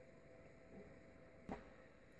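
Near silence with one faint, sharp click about one and a half seconds in, and a fainter small sound just before it, from handling the plastic ESAB TIG torch handle.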